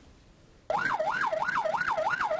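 Police vehicle siren yelping: a fast rising-and-falling wail, about four sweeps a second, that starts suddenly under a second in after a brief hush.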